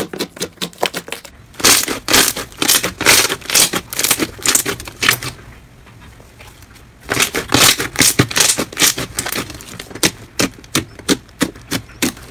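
Slime being pressed and kneaded by hand, giving dense, rapid clicking and popping as trapped air bursts. It goes quieter for about a second and a half just past the middle, then the clicking picks up again.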